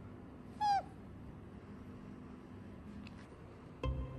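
A pet's single short, high call that falls in pitch, about a second in. Plucked-string music starts just before the end.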